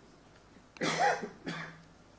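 A man coughing twice into a lectern microphone, about a second in, the first cough longer than the second.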